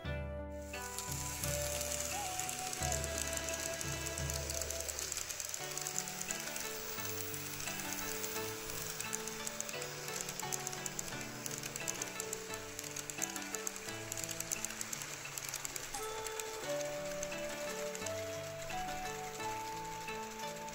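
Background music with a steady melody and bass line. Under it runs a continuous fine hiss and rapid ticking from an N-scale model train rolling along the track.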